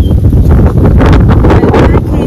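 Wind buffeting the microphone: a loud, ragged low rumble that swells into a rushing gust from about half a second in.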